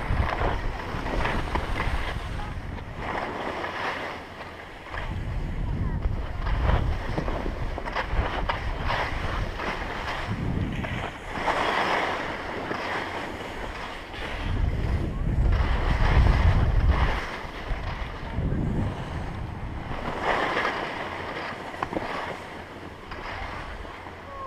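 Skis scraping and hissing over packed snow in a series of turns, with wind buffeting a body-worn action camera's microphone in low gusts, strongest in two spells in the first and middle parts.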